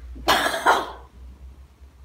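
A young man coughing twice in quick succession, a reaction to eating a foul-flavoured jellybean.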